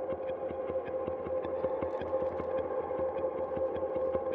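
Experimental improvised music from live electronics and electric guitar through effects: a steady drone built on one held tone, overlaid with a dense crackle of small clicks.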